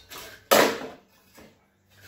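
Small-engine blower housing with its recoil starter being lifted off and set down, one sharp clatter about half a second in that dies away within half a second, followed by fainter handling noise.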